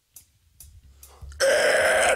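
A heavy metal band's count-in of steady sharp ticks, about two a second, over a low rumble that builds. About one and a half seconds in, the full band comes in loud with distorted electric guitars and drums.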